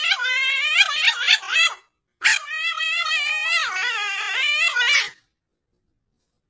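A dog whining in two long, wavering, howl-like calls, the first about two seconds long and the second about three, with a short break between.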